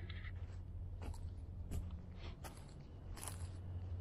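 Faint, irregular crunches and scrapes of footsteps on dry sandy ground strewn with pine litter.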